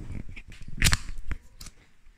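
Handling noise as a hand-held phone is picked up and moved: a few light knocks and clicks, and a short rustle about a second in.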